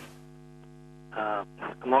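Steady electrical hum on the call-in telephone line, a low buzz with several fixed tones. About a second in, the caller's voice comes through the phone line, thin and cut off at the top.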